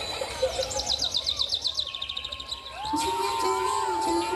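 Birdsong on the dance music's playback track: a fast trill of repeated chirps sliding down in pitch, followed about three seconds in by long held melody notes as the next piece of music begins.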